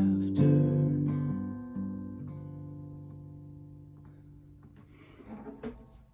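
Steel-string acoustic guitar strumming the song's final chords, then letting the last chord ring and die away over about four seconds. Near the end come a brief rustle and a few light knocks of handling noise as the guitar is moved.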